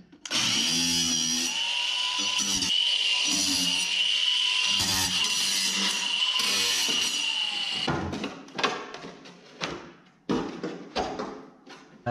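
Cordless drill running for about eight seconds with a wavering whine, then several sharp knocks and scrapes as wooden trim is pulled off the wall.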